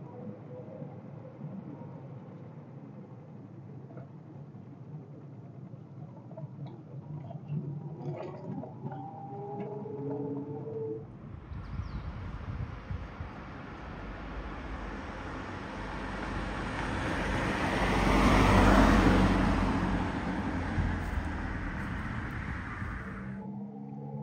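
1987 VW Fox's 1.6 carburetted four-cylinder with automatic gearbox, driving. For about the first eleven seconds it is heard from inside the cabin as a low, steady engine and road noise. Then, heard from the roadside, the car comes closer, is loudest about two-thirds of the way through as it passes, and moves away.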